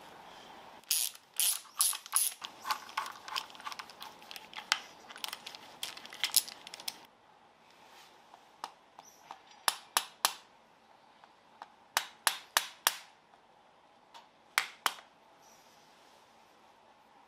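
Ratcheting screwdriver clicking as bolts are run in on an engine's crankshaft oil seal housing. There are fast, dense runs of clicks for the first several seconds, then sharper clicks in separate short groups.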